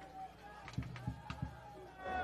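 A lull with faint crowd voices. Four or five short, sharp knocks with low thuds come close together about halfway through.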